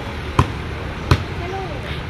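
A basketball bouncing twice on a concrete path, two sharp thumps about three-quarters of a second apart.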